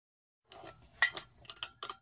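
A quick run of sharp metallic clicks and clinks, starting about a second in, from hand tools and a handheld gas torch being picked up and handled on a workbench.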